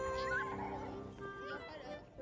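Background music with long held notes, with people's voices over it.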